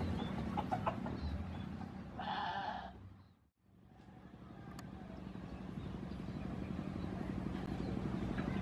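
Low rumble of a train with a short higher-pitched call a little past two seconds, cut off abruptly about halfway through; then the rumble and hum of a KA Prameks commuter train approaching, growing steadily louder.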